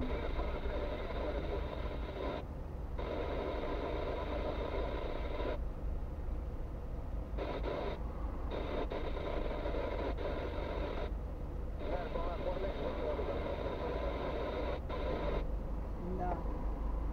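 Voice talking with several short pauses, over the steady low rumble of a car idling while stopped, heard inside the cabin.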